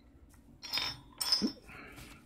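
Thin steel lock-pick tension wrenches and picks clinking together as one is set down among them: two short metallic clatters about half a second apart, with a fainter rustle after.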